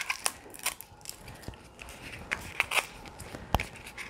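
Plastic wrapping on a lip crayon being handled and peeled off, giving scattered light crackles and clicks, with a sharper click about three and a half seconds in.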